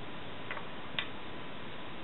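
Two short, sharp clicks about half a second apart, the second louder, over a steady background hiss.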